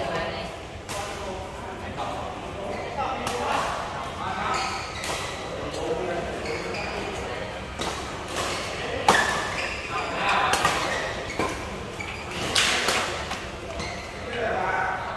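Badminton rackets hitting shuttlecocks in rallies: a string of sharp clicks at irregular intervals, ringing in a large hall, with players' voices between the hits.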